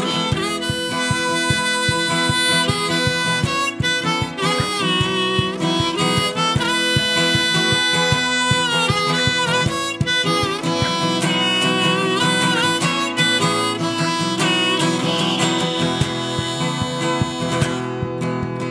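Harmonica solo played in a neck rack over strummed acoustic guitar, in a folk-blues style.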